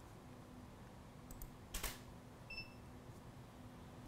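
Quiet studio room tone with a steady low hum, a couple of faint ticks, then a sharp click a little under two seconds in as the tethered Canon DSLR takes a flash exposure. A short high electronic beep follows moments later.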